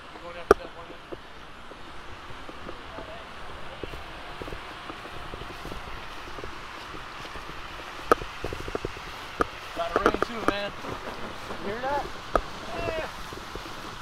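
Quiet outdoor background with a sharp click about half a second in and a few lighter clicks later. Indistinct voices of people talking come in during the second half.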